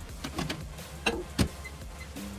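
A few light clicks and one louder knock about one and a half seconds in, from handling workshop gear, over a steady low mechanical hum.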